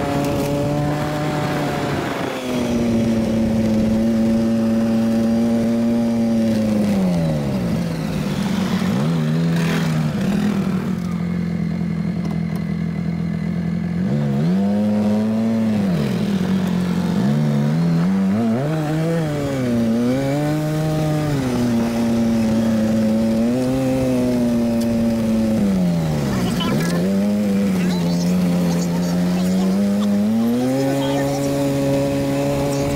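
Polaris RZR 850 side-by-side's engine heard from on board while driving a dirt trail, its pitch rising and falling again and again as the throttle opens and closes. A second, steadier engine note runs beneath it for stretches.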